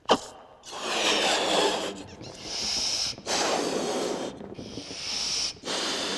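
A latex balloon, a black one nested inside a clear one, being blown up by mouth: a brief sharp sound at the start, then about five long breaths blown into it, each about a second, with quick pauses for breath between.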